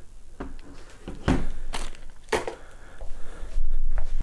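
Hard plastic storage case being handled on a tabletop: three sharp clicks and knocks about half a second apart, then a dull bump near the end.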